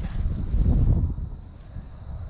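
Wind buffeting the camera microphone outdoors, a low irregular rumble that is strongest in the first second and then eases.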